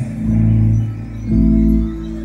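Live rock band playing held low chords without vocals, moving to a new chord about a second and a half in.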